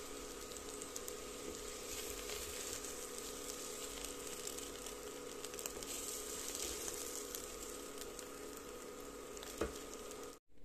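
Spiced French beans sizzling faintly in a hot kadhai, a steady even crackle, with light scrapes of a wooden spatula as they are scooped into a bowl. A steady low hum from the induction cooktop runs underneath.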